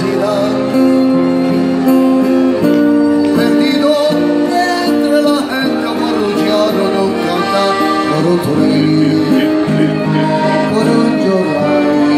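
Live acoustic trio playing a song together: a piano accordion holding sustained chords, a strummed acoustic guitar and a violin carrying the melody with wavering notes.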